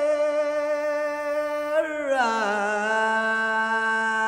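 Man singing a Taomin hua'er (Gansu flower song) unaccompanied, holding a long sustained note, then sliding down at about two seconds to a lower note that he holds through the end.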